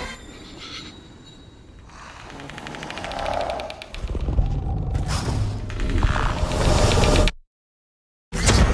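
Film trailer sound design: a rattling, rising swell that builds into a loud low rumble, then cuts off suddenly to silence near the end.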